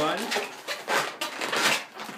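Inflated latex twisting balloons rubbing against each other and against the hands as a knot is tied, in a run of short, irregular scrapes.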